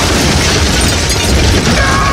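A loud explosion: a sudden blast that goes on as a dense roar of noise. Near the end a man starts a long yell that falls in pitch.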